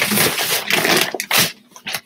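Loud rustling and shuffling as a heavy bag of clothes is hauled up off the floor: one long stretch of rustle, then a shorter burst. A faint steady hum from a fan runs underneath.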